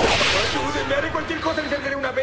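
Layered remix audio from several edits playing at once: a sharp whip-like crack and noisy swoosh right at the start that fades within half a second, over warbling, pitch-shifted voice samples.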